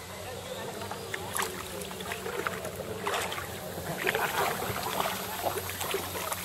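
Kayak paddle strokes in the water: short, irregular splashes and drips, over a faint steady low hum.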